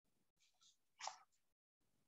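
Near silence: a webinar microphone's room tone, with one brief faint noise about a second in.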